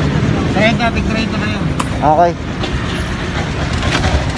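Steady low rumble of motor-vehicle engines and road traffic close by, with a single sharp click a little under two seconds in.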